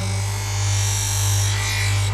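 Electric bench grinder running with a steady motor hum while a knife blade is drawn lightly across the spinning wheel, giving an even grinding hiss: the light final pass that takes off the burr.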